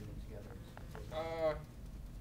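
A man's voice making one short, drawn-out hesitation sound like a held "uhh" about a second in, over a low steady hum.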